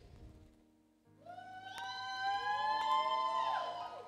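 Several voices in a church congregation call out together in response, long drawn-out cheers that overlap and slowly rise in pitch for about three seconds, starting about a second in, over a faint steady hum. It is a half-hearted response to the rally call.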